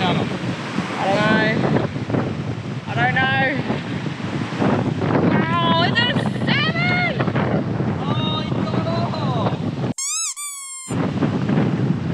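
Waves washing and breaking against shoreline rocks, with wind buffeting the microphone, under excited voices calling out. About ten seconds in the surf noise drops out for under a second beneath a single wavering pitched sound.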